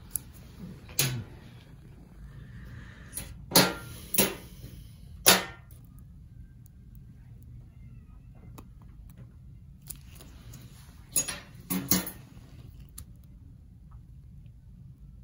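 Handling noise from gloved hands and surgical instruments at a toe biopsy: a few short, sharp rustles and clicks, three of them close together a few seconds in and a pair near the end, over a low room background.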